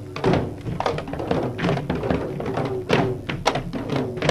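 Several Manipuri dhol barrel drums beaten hard and fast in a Dhol Cholom drum dance. The strokes come in uneven clusters of a few a second, each drum hit leaving a short ringing tone.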